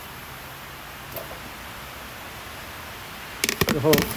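Steady low background hiss with one faint click about a second in, then a quick cluster of sharp knocks near the end as the plastic bucket lid is handled, followed by a man's voice.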